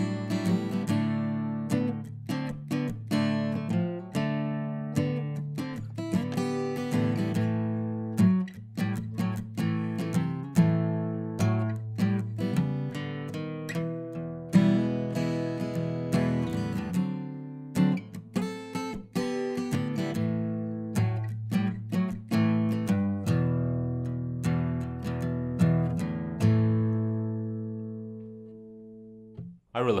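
Acoustic guitar played slowly with a pick: a blues-rock riff of low bass-string notes mixed with muted, percussive strums and full chords. It ends on a final chord left to ring out and fade a few seconds before the end.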